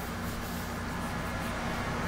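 Steady low background hum with a faint hiss, unchanging, with no distinct event.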